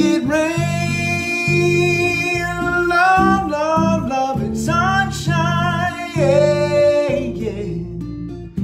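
Man singing a slow melody in long held notes with vibrato, over bass notes and chords tapped on a many-stringed fretboard instrument.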